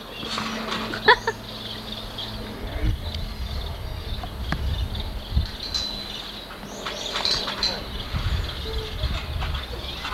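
Indistinct distant voices over steady tape hiss, with a low rumble and a few dull thumps in the second half.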